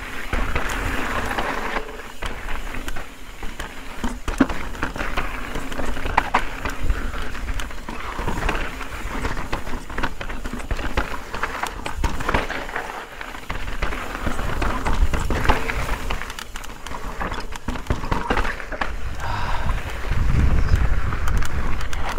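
Mountain bike ridden over rocky, gravelly desert singletrack: knobby tyres crunching over loose dirt and rock, with frequent clicks and knocks from the chain and frame over the bumps. A low rumble runs underneath and grows heavier near the end.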